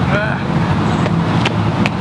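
Steady low outdoor rumble, with a few short rising chirps in the first half-second and a couple of faint clicks near the end.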